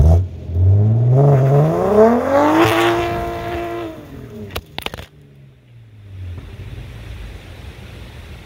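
BMW B58 turbocharged inline-six exhaust note as the car accelerates away: the pitch climbs steadily for about two seconds, holds briefly, then falls and fades as it pulls off. Two sharp cracks come about four and a half and five seconds in, then a faint low rumble is left.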